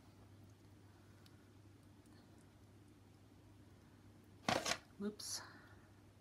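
Quiet room tone with a faint, steady low hum, broken near the end by two short noises: a loud one about four and a half seconds in and a softer, hissier one just after.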